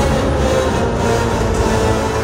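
A film or demo soundtrack played loud through a home theater's SVS Ultra tower speakers and subwoofers: steady music with a heavy, continuous deep bass rumble.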